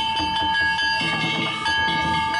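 Danjiri float musicians striking brass gongs (kane) over and over, their metallic ringing tones hanging on between strokes, with drum beats underneath.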